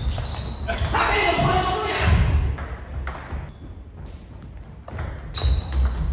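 Table tennis rally: the plastic ball clicking off the paddles and bouncing on the table in a quick run of sharp hits, then a pause, and more hits starting near the end.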